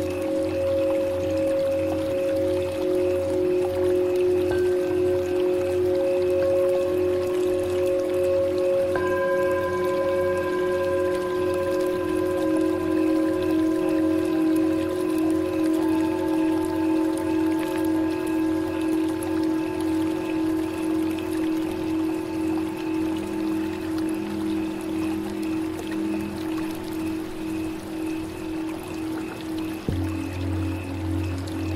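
Tibetan singing bowls ringing with long, wavering tones at several pitches, fresh bowls struck now and then and most clearly about nine seconds in, over a low pulsing drone. A soft trickle of running water sounds beneath them.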